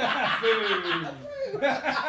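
Men laughing: a loud burst of laughter whose pitch falls away, tailing off after about a second and a half.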